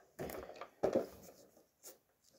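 Handling noise as a boxed set of paint markers is picked up and moved: two short scraping rubs about half a second apart, then a brief brush near the end.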